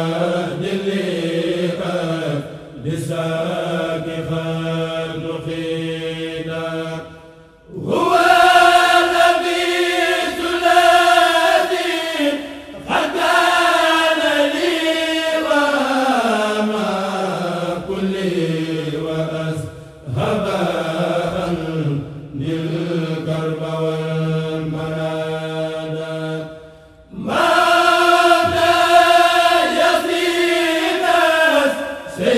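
Kourel (a Murid khassida choir) of male voices chanting an Arabic khassida together, unaccompanied. The voices sing long, drawn-out melodic phrases that slide slowly down in pitch, with short breaks for breath between phrases.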